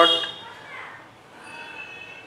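A man's spoken word trails off, then a quiet lull of faint room noise with a faint high tone near the end.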